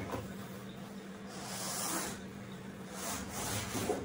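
Cardboard packing sheets and white flat-pack furniture panels rubbing and sliding against each other as they are pulled out of the box, with two longer scraping rustles, about a second in and near the end.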